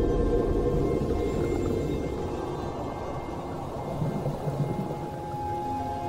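Underwater rush and fizz of bubbles from scuba divers entering the water, fading over the first few seconds, under soundtrack music with long held notes.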